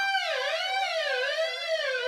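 Electric guitar natural harmonic on the fifth fret of the G string, its pitch dipped and wobbled with the tremolo bar into a siren sound. The note rings steady for a moment, drops about a third of a second in, then keeps wavering up and down.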